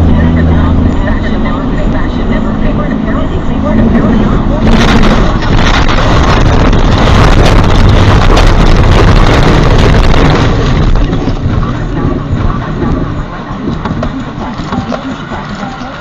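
A tractor-trailer's diesel engine is running steadily, then about five seconds in a loud, continuous crash noise starts as the truck swerves and rolls over onto its side. It lasts about six seconds, dense with knocks and bangs, then dies away gradually.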